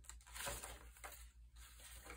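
Faint rustle of paper as a journal page is turned over by hand.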